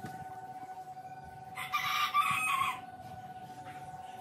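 A single loud bird call about a second long, near the middle, over a faint steady tone.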